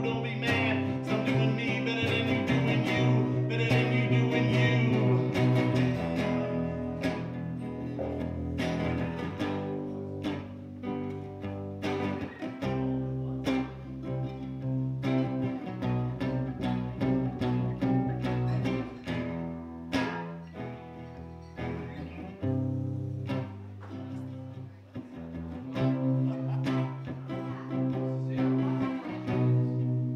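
Acoustic guitar strummed along with an upright double bass, playing a song live.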